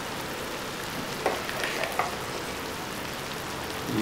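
Steady, gentle sizzle from chicken and par-boiled basmati rice in a hot pan on the stove, with a couple of faint taps of a metal slotted spoon about one and two seconds in.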